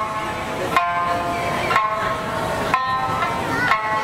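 A man singing a traditional Okinawan song to his own sanshin, the three-stringed Okinawan lute; the music comes in phrases broken by short gaps about once a second.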